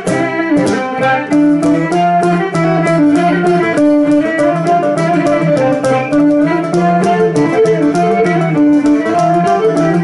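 Cretan lyra and laouto playing an instrumental Greek folk tune: a stepping melody over the laouto's plucked strokes, which keep a fast, even rhythm throughout.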